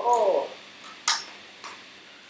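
A man's short drawn-out "ooh" exclamation at the start, then a few light clicks and a brief hissy rattle about a second in, from small plastic toys being handled.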